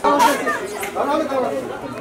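Indistinct chatter of several voices, starting abruptly.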